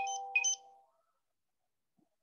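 A short electronic notification chime, under a second long: two quick high notes over a steady lower tone.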